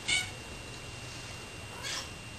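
A domestic cat giving two short, frustrated little meows, begging for freshly opened tuna. The first is the loudest and comes right at the start; the second is fainter and rises in pitch near the end.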